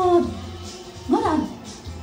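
Woman singing live into a microphone over a backing track. A held note ends just after the start, and a short gliding sung phrase comes about a second in.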